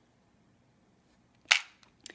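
A single sharp plastic click about one and a half seconds in, with a faint tick just after, from handling a clear plastic compartment organizer case.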